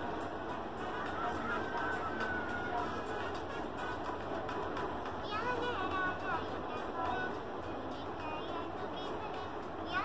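Music and voices from a video playing through a phone's speaker, with higher wavering voice lines coming in about halfway through.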